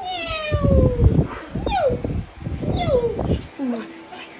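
A cat meowing: three falling meows about a second apart, the first one long. Low rumbling thumps run under them.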